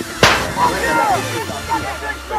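A single sharp, hollow plastic smack of a Wiffle ball hit about a quarter of a second in.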